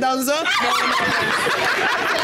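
Several people laughing and chuckling, with a voice briefly at the start and the laughter thickening from about the middle.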